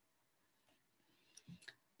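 Near silence: room tone, with a few faint short clicks about one and a half seconds in.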